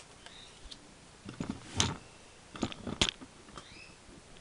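Stiff cardboard game cards being handled and laid down on a wooden table: a handful of light taps and card slaps, in two clusters a little before two seconds in and around three seconds in.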